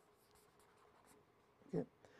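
Faint scratching of a felt-tip marker drawing a quick zigzag line on a sheet, a string of short strokes in the first second or so.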